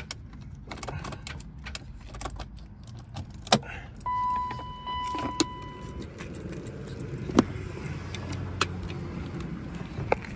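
Keys jangling in the ignition of a 1999 BMW 540i, with four sharp clicks and a steady electronic warning chime for about two seconds near the middle, but no engine cranking or running. The owner takes the no-start for a bad starter or starter wire.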